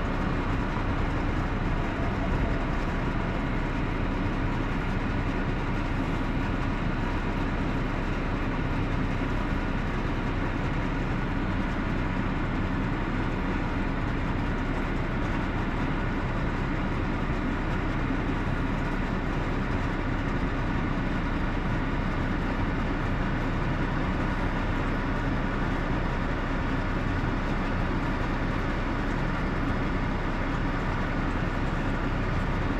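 Steady rumble and hiss of a car heard from inside the cabin, unchanging throughout.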